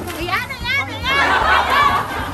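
Women laughing and squealing in high voices while playing in a pool, with water splashing in the second half.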